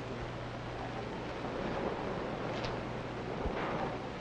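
Steady hiss with a faint low hum from an old film soundtrack, with no other sound of note.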